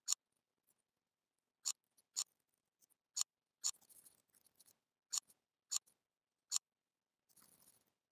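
Quiet, sharp clicks of a computer mouse and keyboard during text editing, about eight at irregular intervals, with a soft rustle around four seconds in and again near the end.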